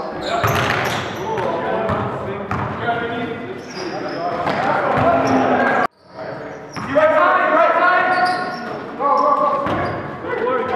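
Basketball game in a gymnasium: the ball bouncing on the hardwood floor amid unintelligible players' voices that echo in the large hall. The sound cuts off abruptly about six seconds in and starts again straight after.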